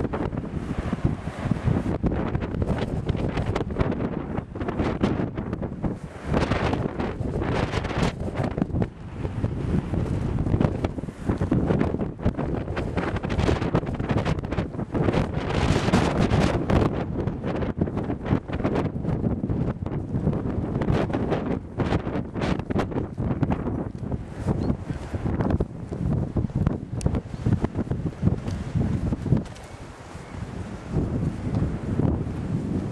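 Wind buffeting the microphone in irregular gusts: a loud, rough rumble that swells and drops throughout.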